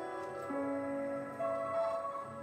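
Slow, sparse grand piano notes ringing on in a live jazz trio's improvisation, with a new lower note about half a second in and a higher note joining past the middle.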